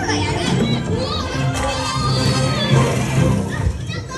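Ride show audio: children's voices calling out over the attraction's music, from the costumed Lost Kids animatronics.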